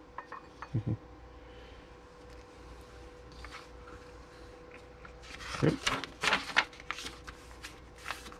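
Paper pages of a printed manual being turned and rustled, in a few quick sharp strokes about two-thirds of the way through, over a faint steady hum.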